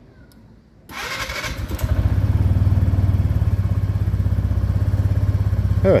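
Mondial Strada 125 scooter's single-cylinder engine cranked on the electric starter, powered by a newly fitted battery, for about a second before it catches about two seconds in and settles into a steady idle. It does not catch instantly, which the owner says is normal for this engine.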